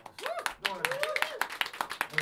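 Small audience clapping at the end of a song, with several voices calling out over the applause.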